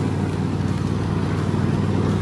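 Cub Cadet XT1 LT46 riding lawn tractor's engine running at a steady speed while the tractor backs up in reverse.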